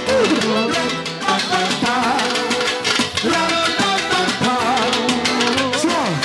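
Live manele band music: a fast, steady beat under an ornamented melody whose notes bend and swoop in pitch.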